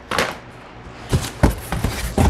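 Cardboard boxes and parts being handled: a sharp knock near the start, then a few thumps and rustles in the second half.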